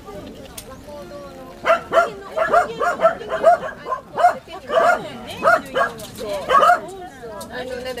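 Pembroke Welsh corgi puppies yipping and barking while they play-fight: a quick run of short, high-pitched calls, several a second, starting about a second and a half in and stopping shortly before the end.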